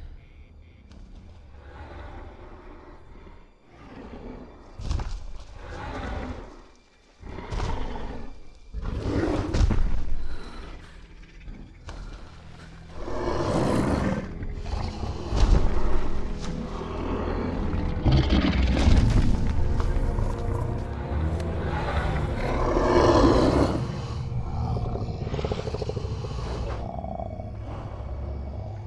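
Film soundtrack: a swelling score over a constant deep rumble, with a giant ape's low growls and breaths coming in surges that grow louder and run on from about thirteen seconds in.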